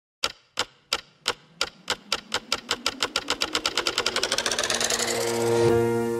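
An intro sound effect of sharp clicks that speed up steadily from about three a second into a fast rattle, swelling in loudness. Just before the end they stop and sustained musical chords begin.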